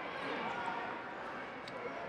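Background hubbub of indistinct voices in a large, echoing hall, with a short sharp click or slap about one and a half seconds in.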